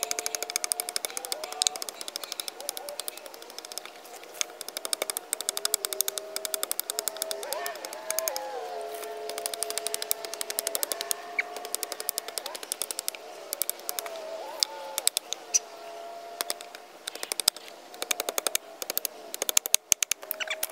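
Wooden stakes being sharpened to points with a blade: a quick, irregular run of sharp cutting knocks, several a second.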